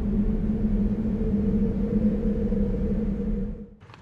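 Low rumbling drone with a steady hum, the sound effect of an animated intro logo; it holds at an even level and dies away just before the end.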